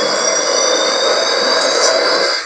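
Loud, steady harsh static noise with thin high whining tones over it, a glitch or distortion sound effect.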